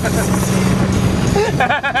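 Golf cart running as it drives over the grass, a steady low hum that drops away about a second and a half in, when a voice cuts in.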